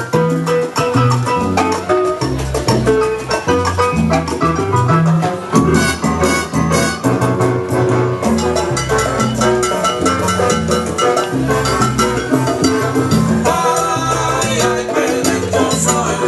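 1970s salsa music played from a vinyl record over a dance hall's sound system: a full band with a moving bass line and steady percussion, continuous and loud.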